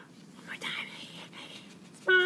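Soft whispering, breathy and unvoiced, with its clearest burst about half a second in.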